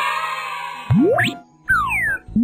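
Cartoon sound effects over a children's music bed: a noisy rush that dies away about a second in, then a quick rising whistle-like glide and two falling glides near the end.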